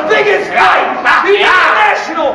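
Men yelling in loud, drawn-out wordless cries, their pitch sweeping up and down.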